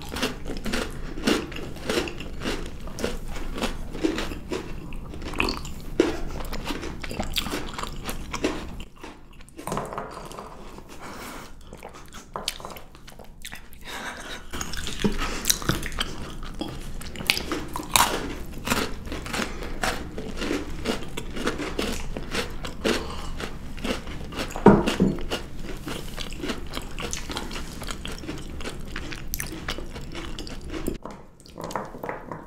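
Close-miked biting and chewing of chocolate-covered marshmallows, with the chocolate coating crackling in short clicks. The eating is quieter for a few seconds about ten seconds in, then picks up again.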